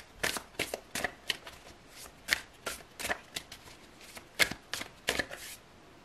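A deck of tarot cards being shuffled by hand: a quick, irregular run of crisp card snaps that stops shortly before the end.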